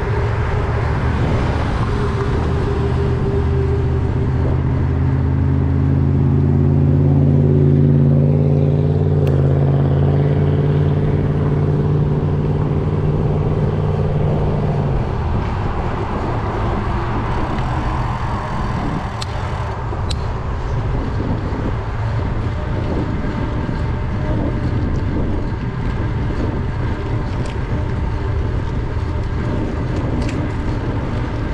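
Wind and road noise on a cycling GoPro's microphone, with a motor vehicle's engine drone building up, loudest about eight seconds in, and dying away about halfway through.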